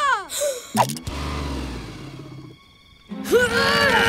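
Cartoon soundtrack effects and music: a falling pitch glide, a short knock, then a low rumble that fades out. About three seconds in, a sung melody begins.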